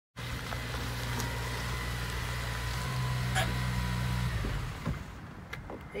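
A Honda car's engine running as it pulls up on gravel, then the engine sound stops about four seconds in. A few sharp clicks follow.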